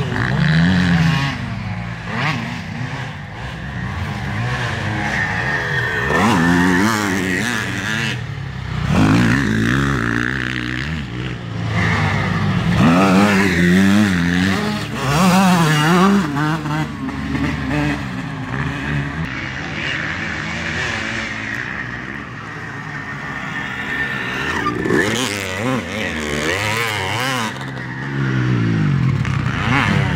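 Motocross dirt bike engines revving hard on a dirt track, the pitch climbing and dropping again and again with throttle and gear changes. One bike passes close about halfway through, the loudest moment.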